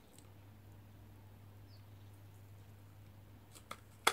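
Near silence: room tone with a steady low hum, and a couple of faint clicks near the end.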